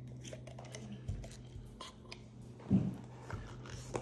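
Small handling noises on a cloth-covered tabletop: scattered light clicks and a few soft bumps as a glass jar of latex glue is brought out and set down, the strongest bump about two and a half seconds in. A low steady hum runs underneath and drops out for a while in the middle.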